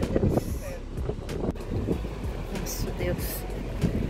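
Wind buffeting the microphone, an uneven low rumble that rises and falls in gusts.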